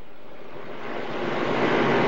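Rushing, hiss-like noise with no voice, growing louder through the second half: noise on a call-in phone line carried on air.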